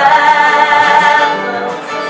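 Live singing with strummed acoustic guitar: one long held sung note that fades out about a second and a half in, leaving the guitar playing.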